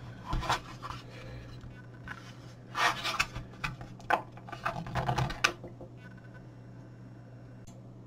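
Plastic housing of an AcuRite Atlas touchscreen weather display being pried apart by hand: irregular clicks and scrapes of the case's snap clips letting go, in several bunches over the first five seconds or so, then only a faint steady low hum.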